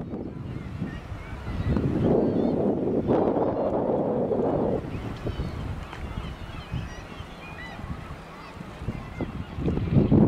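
Harbour ambience with gulls calling again and again, short wavering cries, and a louder rushing noise in the first half.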